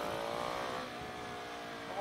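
Husqvarna 701 single-cylinder supermoto engine with an aftermarket Remus exhaust, pulling under acceleration while riding. Its note rises slightly, then drops to a lower, steady pitch about a second in.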